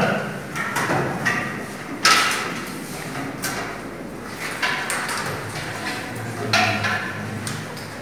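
Classroom bustle: scattered knocks and rustles of students shifting at desks and handling bags and coats, with a sharper knock about two seconds in.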